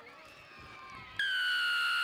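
Referee's whistle, one long steady blast starting about a second in, signalling a try just grounded.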